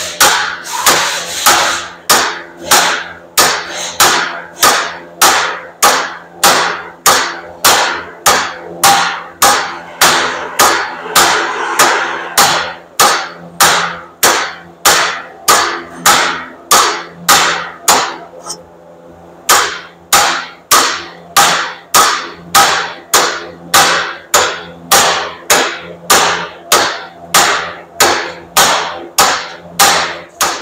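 Steady hammer blows on a Subaru Impreza's rusty rear wheel hub and bearing assembly, about one and a half strikes a second, with a pause of about a second halfway through. Each blow rings on the metal. The stuck hub is being driven out of the steering knuckle.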